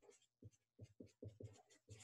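Felt-tip Sharpie marker squeaking and scratching faintly on paper in a quick run of short strokes as letters and subscripts of a chemical formula are written.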